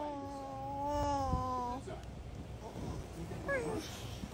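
A baby vocalizing: one long held, slightly wavering 'aah' of about two seconds, then a short falling squeal near the end.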